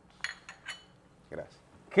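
China coffee cups and saucers clinking as they are handled and set down on a table, a few light clinks in the first second.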